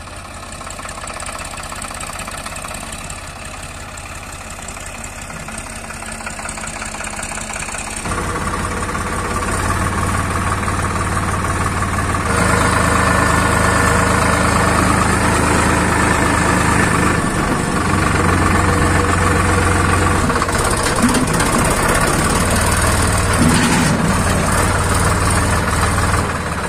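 Diesel engine of a Sonalika DI 42 RX 42 hp tractor running steadily as the tractor is driven, heard close from the driver's seat. It gets louder in two steps, about eight and twelve seconds in.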